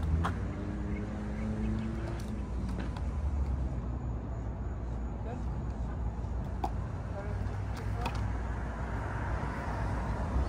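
Outdoor ambience by a parking lot: a steady low rumble of traffic and wind, with faint voices in the first couple of seconds and a few small clicks.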